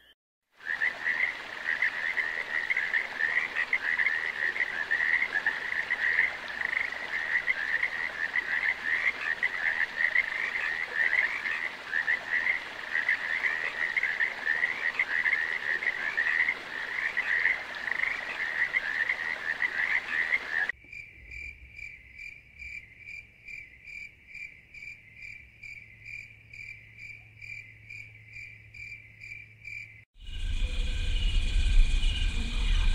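Frog chorus: many overlapping trilling calls. About two-thirds of the way through it cuts to a different, thinner high call repeating about three times a second.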